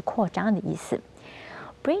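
Speech only: a voice reading an English news sentence aloud, with a soft, breathy stretch between phrases.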